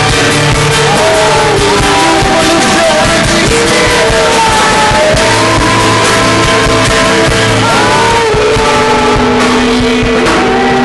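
Live worship music from a band, with voices singing long held notes over it, loud and continuous.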